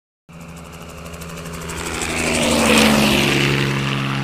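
Sound effect of a propeller aircraft's engine flying past. It swells steadily to a peak about two-thirds of the way through, dips slightly in pitch there, then holds and cuts off suddenly.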